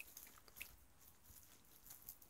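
Near silence, with a few faint small clicks scattered through it.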